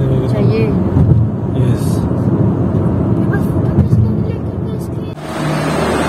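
Inside a moving car on a highway: a steady low rumble of engine and road noise, cut off abruptly about five seconds in.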